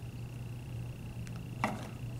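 Quiet room tone with a steady low hum and a thin high whine. A couple of faint light taps a little after a second in, as a small toy figurine is set down inside a small cardboard box.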